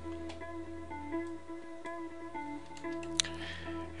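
Soft background guitar music, a few plucked notes held and changing, over a low steady hum. A single sharp click comes a little after three seconds in.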